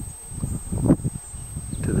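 Wind rumbling on a handheld camera's microphone, with a few soft thuds of footsteps through mown grass, the strongest about a second in.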